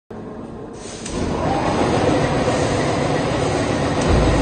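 Seed-cleaning machinery running with a steady rattling rumble, getting louder about a second in as it comes up to full running.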